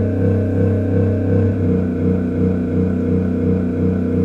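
Computer-generated MIDI synthesizer music: a quick, even run of notes wandering up and down in pitch over a steady low held tone. The pitches are set by solar UV-B readings that passing clouds raise and lower.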